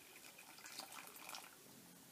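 Faint trickle of water poured slowly from a plastic measuring jug into a bowl of Ultracal gypsum powder.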